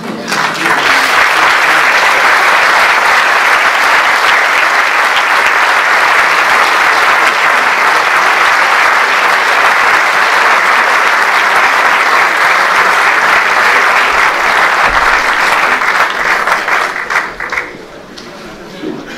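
An audience applauding at the close of a talk. Steady, loud clapping that thins out and fades near the end.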